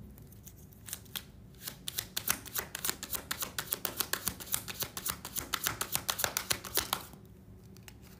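A deck of tarot cards being shuffled by hand, with a few single card clicks about a second in, then a fast steady run of crisp card-on-card clicks, about eight to ten a second. The clicks stop about a second before the end.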